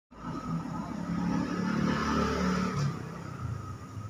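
A motor vehicle engine running nearby, louder for the first three seconds and then dropping away.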